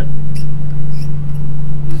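Steady, loud low machine hum with a few faint, short high squeaks.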